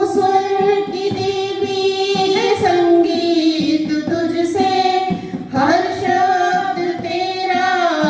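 A group of schoolboys singing a Saraswati bhajan together into microphones, in long held notes with a short break for breath about five seconds in.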